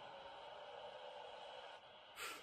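Near silence: a faint, steady background hiss and hum.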